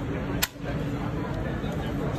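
Background chatter of a crowd of voices in a busy exhibition hall, with one sharp click about half a second in.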